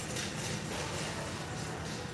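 Steady background noise of a large store: a low hum and hiss with no distinct event.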